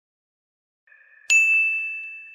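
Silence, then a faint high tone fades in, and a single bright chime strikes a little over a second in. It rings on one high note and fades slowly, like a logo-reveal sound effect.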